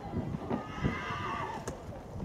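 Hooves of a showjumping horse cantering on a sand arena surface, dull thuds a few times a second. A higher sound lies over them through the middle of the stretch.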